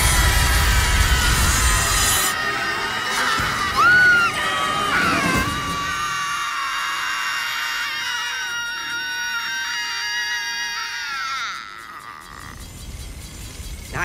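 Several cartoon voices screaming together in one long, drawn-out scream over background music. The scream breaks off about two seconds before the end.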